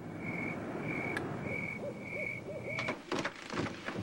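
Night-time ambience: crickets chirping in even pulses about every half second, with an owl hooting softly in a short run of calls, over a low rumble; the chirping stops near the end.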